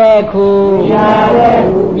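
A Buddhist monk chanting in a man's voice, holding long, level notes on a nearly unchanging pitch with short breaks between phrases.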